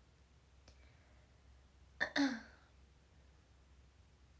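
A young woman coughing once, a short sharp cough about halfway through.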